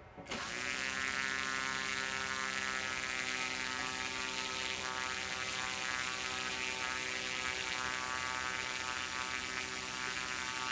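Fold-out propeller motor of a model Duo Discus glider starting abruptly and settling within about a second into a steady, high buzzing whine as the propeller runs up on its raised mast.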